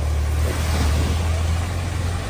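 Land Rover Defender's engine running with a steady low drone as it drives through deep floodwater, with the rushing wash of water pushed up by the truck.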